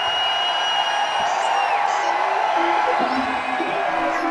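A large audience cheering and whooping, many held shouts overlapping.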